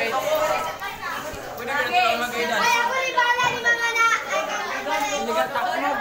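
Young voices chattering and talking over one another, with shouts here and there.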